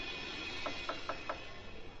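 Four quick, light clicks about a fifth of a second apart in the middle, over a low steady hiss.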